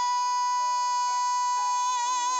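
A male singer holds one long, very high note, dead steady and without vibrato, over soft sustained backing music.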